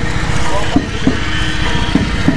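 BMW R18's big boxer-twin engine running at low revs close by, a continuous low rumble with rapid firing pulses, as the motorcycle pulls slowly away.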